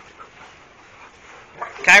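Several large dogs moving around close by, making only faint sounds, then a man's voice calls out a dog's name loudly near the end.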